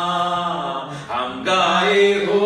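A male voice sings a Hindi worship song into a microphone. It holds one long note that breaks off about a second in, then starts a new phrase with a rising note.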